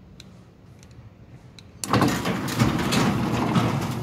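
Automatic gate opener motor switching on about two seconds in and running loudly as the gate moves open. It runs with the electric gate lock disconnected, which shows the fault lies in the lock.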